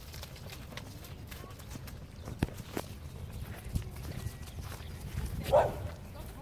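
Pony trotting on grass, its hooves making dull, uneven thuds, over a low rumble of movement noise with a few sharp clicks. A brief voice-like sound comes near the end.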